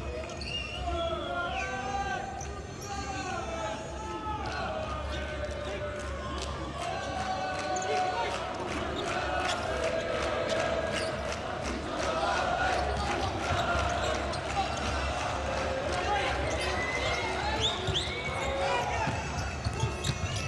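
A futsal ball being passed and bouncing on a hard indoor court: repeated sharp knocks. Players shout and call to each other over it, echoing in the arena hall.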